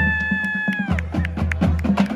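Marching band drumline playing a marching cadence: sharp snare and stick clicks over low bass-drum beats at a steady pulse. A single held high tone sounds over it through the first second, then stops.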